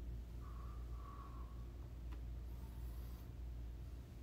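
Quiet room tone: a steady low hum, with a faint short squeak about half a second in and a single soft click about two seconds in.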